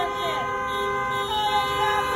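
Several vehicle horns honking together in long held blasts at different pitches, in celebration of a graduate crossing the stage, with voices calling out over them.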